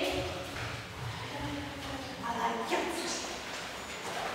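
Indistinct talking echoing in a large room, with light footsteps on the hard floor.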